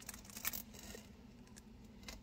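Faint light clicks of metal jewelry pliers and wire being handled, a few within the first half second or so, over a low steady hum.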